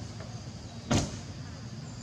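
A single short thump about a second in, over a steady low background rumble.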